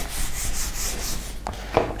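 Whiteboard eraser wiped back and forth across a whiteboard, a rhythmic rubbing hiss of about three strokes a second, with a light tap about one and a half seconds in.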